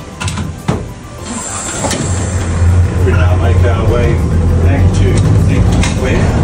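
Heritage electric tram's controller clicking as the driver works the handle, with a short hiss, then the traction motors humming low and steady as the tram draws power and moves off.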